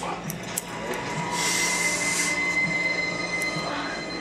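A hissing, squeal-like sound from a television, with a steady high whine, rises about a second in and lasts about two seconds. A few crisp snips of barber's scissors cutting hair sound along with it.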